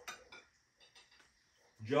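A few faint clinks of forks on plates in the first second or so, in a quiet room.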